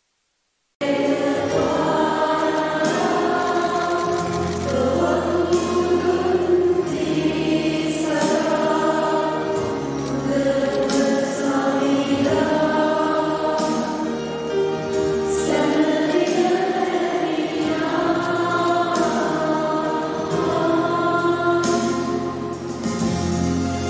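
Choir singing church music, with long held notes over a steady low accompaniment; it starts abruptly just under a second in, after silence.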